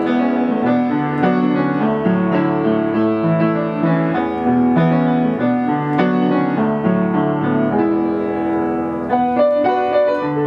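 Yamaha U1 upright piano played continuously, a flowing passage of chords and melody notes.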